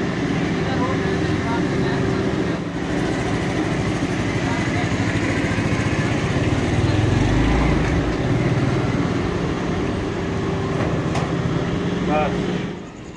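An engine idling steadily, a constant hum that deepens briefly about seven seconds in and fades away just after the end.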